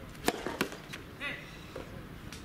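A soft tennis racket strikes the soft rubber ball with a sharp pock about a quarter second in, followed by a couple of softer knocks. About a second later comes a short shout from a player.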